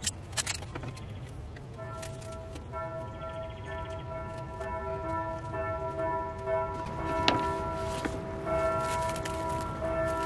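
Plastic wrap crinkling as it is pulled from the roll, then several bell-like tones ringing and overlapping from about two seconds in.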